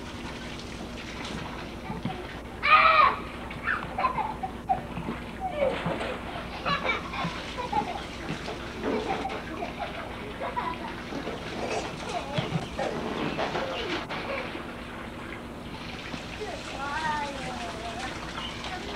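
Young children's voices, chattering and squealing, with a loud high shout about three seconds in. Underneath runs water from a garden hose spraying and splashing into an inflatable kiddie pool.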